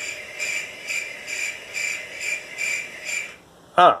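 Cricket chirping sound effect, a steady pulsing chirp about twice a second that starts abruptly and cuts off after about three and a half seconds. It is dropped in as the comic 'awkward silence' gag.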